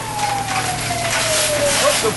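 A fire apparatus siren winding down: one tone falling slowly in pitch until it cuts out near the end. A steady rushing hiss runs underneath.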